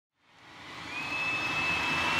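Opening of a rock song's studio recording fading in from silence: a steady rushing, wind-like noise swells up, joined about a second in by a thin, high held tone.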